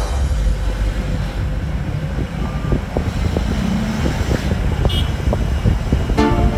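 Road and engine noise heard from inside a moving vehicle: a steady low rumble with scattered small knocks and rattles.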